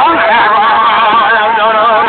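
Men's voices singing a sustained ceremonial song, its pitch wavering and held without breaks.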